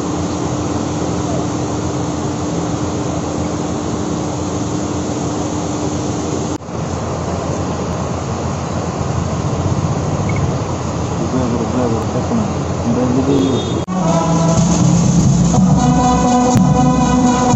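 A steady outdoor rushing noise with a low hum, broken by a sharp cut about a third of the way in. About two seconds before the end, after another cut, a ceremonial brass band starts playing.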